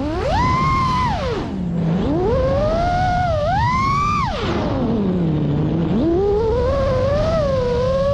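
Five-inch freestyle quadcopter's brushless motors (Xing2 2207 1855 kV) spinning Gemfan 51477 props, recorded onboard: a whine whose pitch climbs and falls with the throttle. It rises high about half a second in, drops low around two seconds, climbs again near four seconds, then sits low for about a second before rising again near the end.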